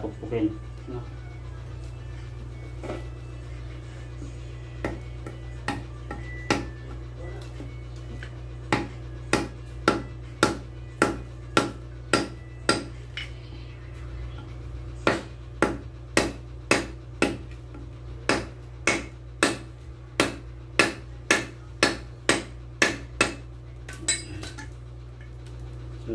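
Light hammer taps on a driver seating a new oil seal into a Rusi MP 100 front fork tube: a few scattered taps, then a steady series of about two sharp metallic taps a second with one short pause.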